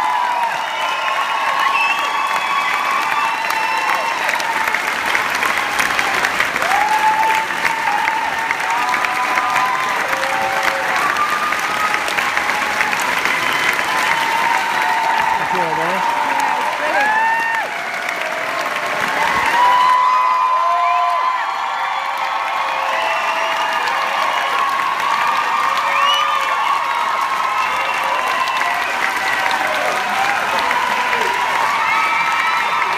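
A theatre audience applauding steadily at a curtain call, with shouts and whoops rising out of the clapping again and again.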